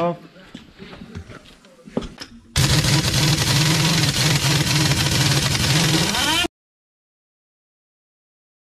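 Heavy-duty pneumatic impact wrench running on a trailer wheel's lug nut to loosen it for wheel removal: a loud, steady hammering buzz that starts about two and a half seconds in and cuts off suddenly near six and a half seconds.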